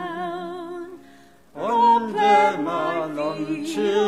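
A woman singing unaccompanied, holding long notes with vibrato; she breaks off for a breath about a second in, then the song resumes.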